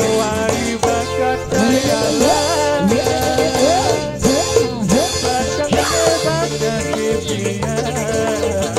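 Balinese joged bumbung gamelan music: bamboo xylophones with drums and small clashing cymbals, played continuously for the dance. Sliding, wavering notes rise and fall over the ensemble through the middle seconds.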